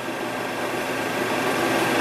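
Steady hiss of an old film soundtrack played back on a Technicolor 8mm cartridge projector, with a faint steady hum, growing slightly louder toward the end.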